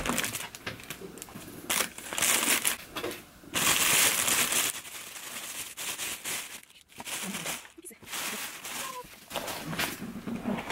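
Thin plastic carrier bag crinkling and rustling in irregular bursts as a takeout food container is pulled out of it, loudest in the first half.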